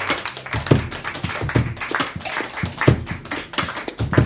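Sparse applause from a small audience, individual hand claps coming irregularly about three or four times a second, just after the band's tune has ended.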